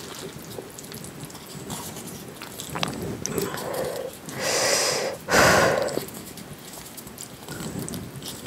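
Two breathy blows on hot kimchi pasta to cool it, about four and a half seconds in, the second one louder, with faint small clicks of utensils in the pasta around them.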